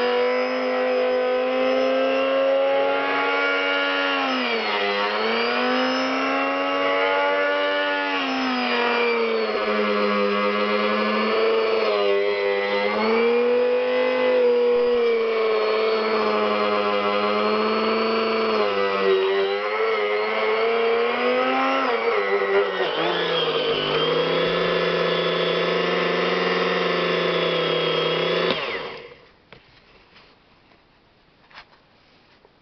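Homemade electric sugar grinder running, milling granulated sugar into powdered sugar: a steady motor whine whose pitch sags and recovers several times. Near the end the motor winds down and stops.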